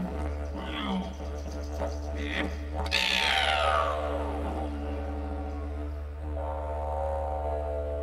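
Didgeridoo solo: a steady low drone with overtones shaped by the player's mouth sweeping up and down above it, the strongest a falling sweep about three seconds in, then a held higher overtone toward the end.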